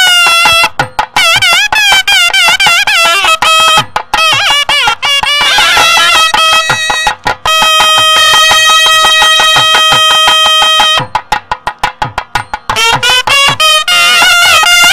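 Nadaswaram playing an ornamented temple melody with wavering, bending notes over thavil drum strokes. It holds one long steady note from about seven and a half to eleven seconds in, then breaks into short notes before the melody resumes.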